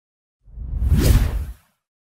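A single whoosh sound effect for an animated logo, swelling in about half a second in, peaking just past a second and fading out by about a second and a half.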